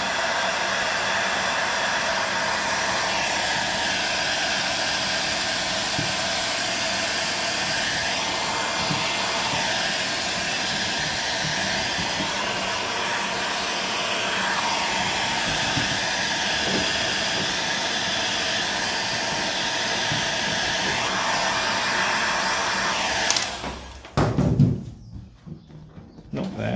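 Handheld Ozito electric heat gun blowing hot air onto a vinyl go-kart sticker to soften it, its fan and airflow making a steady even rush. It cuts off suddenly near the end, followed by a short thud.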